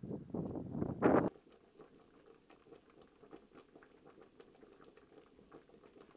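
Sheep grazing: a loud rough rustling burst lasting just over a second, then faint, irregular, crisp ticks and patter of grass being cropped.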